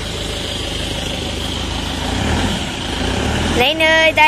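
Mahindra Bolero's diesel engine idling with a steady low hum, growing a little louder about two seconds in.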